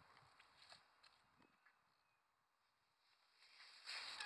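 Near silence, with a few faint soft clicks in the first second and a half, then almost nothing.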